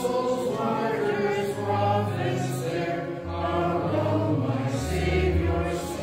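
Church congregation singing a hymn in long held notes that change about every second, over low sustained bass notes of an accompaniment.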